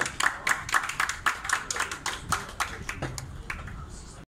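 Hand clapping: sharp, irregular claps several times a second, thinning out near the end.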